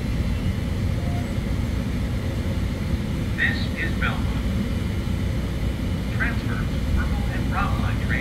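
Steady low rumble of a Chicago 'L' rapid-transit train at the station, with short bursts of voice or announcement over it about three and a half seconds in and again near the end.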